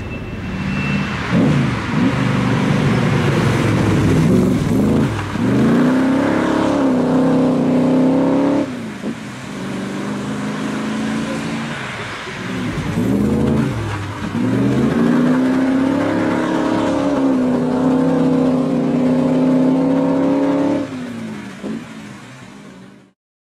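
1966 AC Cobra's V8 revving hard as the car pulls away and slides, the note rising and falling in several surges. After a brief drop there is a second long run of hard acceleration: the note climbs, holds high, then falls away near the end.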